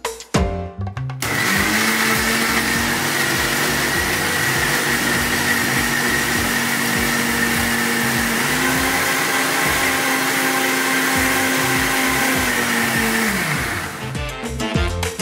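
Philips mixer grinder with a stainless steel jar blending roasted peppers, feta and olive oil into a thick dip. The motor starts about a second in and runs steadily, its pitch stepping up slightly about two-thirds of the way through, then winds down just before the end.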